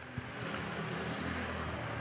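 A motor engine running steadily with a rushing hum that swells about half a second in, after a single short knock.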